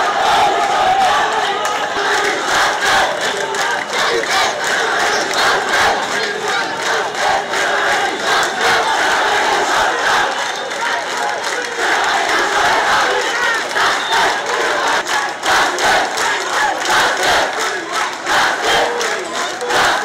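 Loud crowd of protesters, many voices shouting at once.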